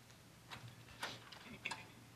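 Three faint, short clicks, the last the loudest, over a faint steady low hum.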